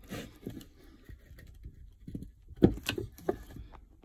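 Handling noise from a plastic quick clamp and a block of timber on a wooden bench: light scattered clicks and rustles, then a cluster of sharper knocks about two and a half to three and a half seconds in.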